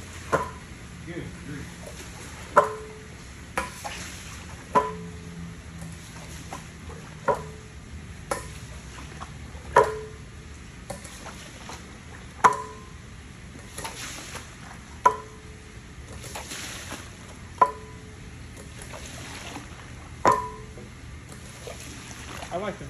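Metal floor squeegee being pushed in repeated strokes across a soaked wool rug, driving rinse water off it. Each stroke starts with a sharp clack that rings briefly, about every two and a half seconds, with smaller clicks and wet splashing in between.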